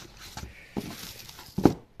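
Clear plastic parts bags crinkling as parts are handled in a cardboard box, with a few light knocks and one sharp knock about one and a half seconds in.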